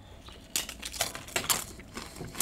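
Tortilla chip being bitten and chewed: a run of irregular crisp crunches starting about half a second in.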